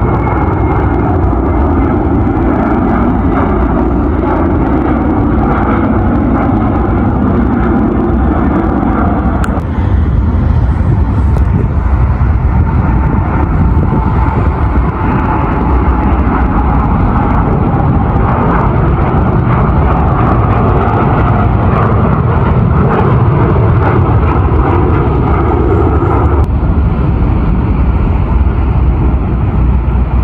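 Jet engines of a widebody airliner at takeoff thrust: a loud, steady rushing noise with a deep low end. The sound shifts abruptly about ten seconds in and again near the end.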